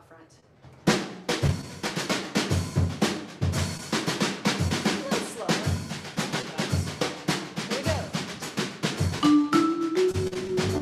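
Jazz drum kit starting a groove about a second in, with snare and rim hits over a steady kick drum. A vibraphone comes in near the end.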